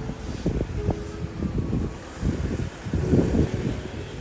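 Wind buffeting the phone's microphone outdoors, an uneven low rumble coming in gusts.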